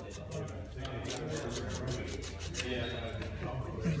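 Sandpaper rubbed by hand on a steel transmission shaft in short, irregular scratchy strokes, dressing the shaft so a part will slide off it. A steady low hum runs underneath.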